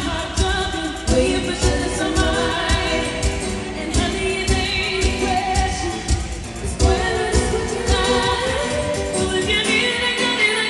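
Live pop music: a female singer's voice over a band with a steady beat, heard from the audience in a concert hall.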